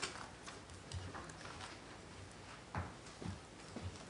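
Irregular faint clicks and knocks, with a few low thumps, from people moving about and settling in at a panel table.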